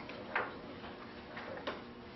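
Two short clicks over steady room hiss, the first louder, about a second and a half apart.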